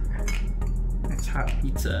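Metal utensils clinking and scraping against a ceramic plate and a wooden cutting board as a pizza slice is served and the pizza cutter is set down, with several sharp clicks.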